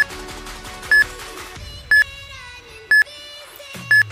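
Countdown timer sound effect: a short, high beep once a second, five beeps in all, over soft background music.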